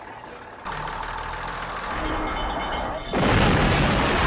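A low rumble builds, then a loud bomb explosion blasts in about three seconds in, a dense roar of noise from the film's soundtrack.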